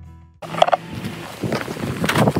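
Guitar intro music fading out, then a short sharp sound about half a second in, followed by the crinkling and rustling of an Intex pool's vinyl being pulled open and unfolded by hand.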